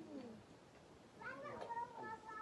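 A short low voice at the start, then about a second in a high-pitched, wavering voice-like call that rises and falls in pitch and carries on to the end.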